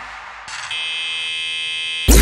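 Break in an electronic dance track: the beat has cut out, leaving a quiet fading tail, then about half a second in a steady alarm-like buzzing synth tone starts and holds without change.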